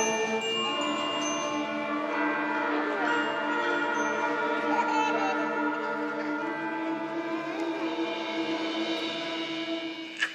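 Eighth-grade concert band playing long, held chords: brass and woodwinds sustaining together at a steady level.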